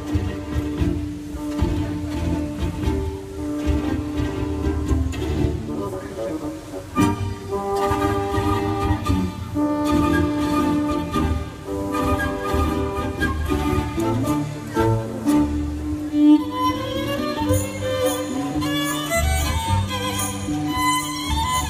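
Symphony orchestra playing, the bowed strings carrying long sustained notes, with a run of rising notes near the end.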